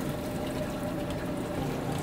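Water running and trickling steadily in bait-shop minnow tanks, with a faint steady tone under it that fades near the end.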